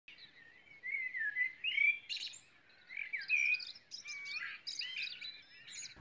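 Songbird singing a varied, warbling song in short phrases, starting about a second in.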